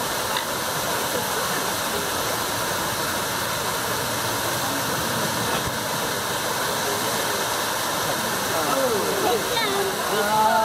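A steady, even rushing noise, with people's voices talking over it near the end.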